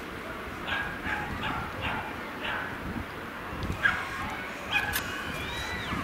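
A series of short, high calls from a distant animal, about two a second, with a few more later on, over steady open-air seaside background noise. Near the end a thin whistle-like tone rises and then drops.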